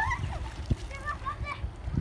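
Boys splashing in muddy river water as they swim, with high children's shouts over the splashes.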